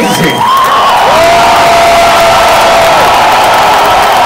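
Large concert crowd cheering and whooping loudly. About a second in, one long held note rises in, holds for about two seconds, then drops away.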